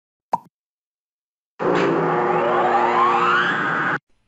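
Intro sound effects: a single short plop, then about a second and a half in a loud, dense sting with steady held tones under a rising sweep, cutting off abruptly.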